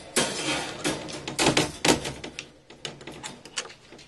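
Metal wire-grid cage panel being unhooked and shifted, rattling and clanking in a quick run of clicks. The loudest clatter comes in the first two seconds, then thins to a few lighter ticks.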